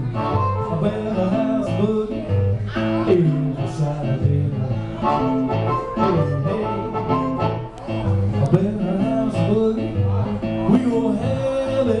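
Blues harmonica and hollow-body archtop guitar playing a barrelhouse boogie together, the harmonica bending notes over the guitar's steady boogie rhythm.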